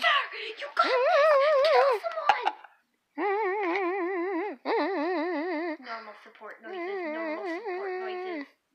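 A child humming a tune in long wavering notes, the pitch trembling evenly up and down, each note lasting a second or two with short breaks between them.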